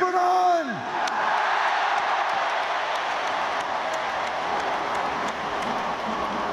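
A man's shouted word into a microphone, held and falling away in the first second, then a large stadium crowd cheering steadily for about five seconds.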